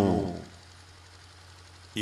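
A man's speech trails off, then a pause in which only a steady low electrical hum and faint hiss are heard. Speech starts again right at the end.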